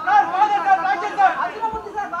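Speech only: a man talking into press microphones, with other voices chattering around him.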